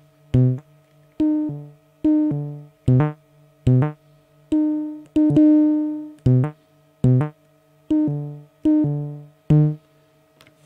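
Ciat-Lonbarde experimental synthesizer, an early handmade instrument built on the Jurassic Organ circuit, played as about a dozen short notes. Each note starts with a click and dies away, all at the same low set pitch, some held longer near the middle, with a faint steady hum sounding between them.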